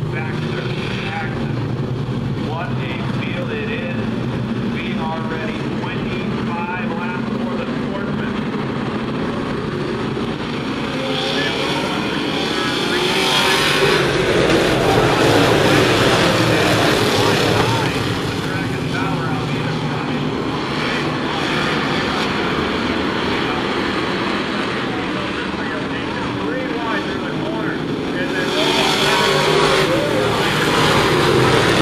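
A field of Sportsman stock cars racing in a pack around a short oval track, their engines running hard. The sound swells loudest as the pack passes close by about halfway through, and rises again near the end.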